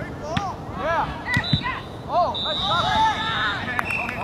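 Soccer players shouting and calling out on the pitch as a rebound shot goes in, with a couple of dull knocks of the ball about a second in. In the second half a steady high whistle tone sounds for over a second.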